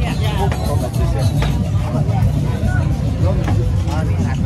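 Busy street ambience: nearby voices and crowd chatter over the steady low rumble of a motor vehicle.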